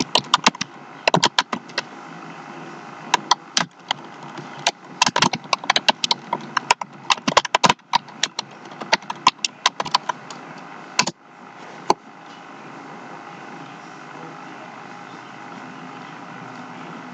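Clusters of sharp, irregular clicks and taps close to the microphone, stopping about eleven seconds in; after a brief dropout only a steady hiss remains.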